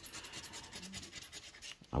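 A scratch-off lottery ticket being scraped with a metal dog-tag scratcher: quick, light rasping strokes as the coating comes off the number spots.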